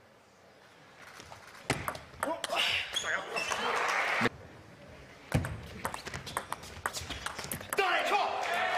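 After a near-silent first second, scattered sharp clicks and voices. From about five seconds in, a table tennis rally: quick, sharp clicks of the ball off the bats and the table.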